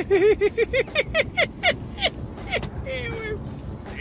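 Laughter in a rapid run of short 'ha' bursts that slow and fade away over about two seconds, followed by a brief falling vocal sound near the three-second mark, over the low hum of a car cabin.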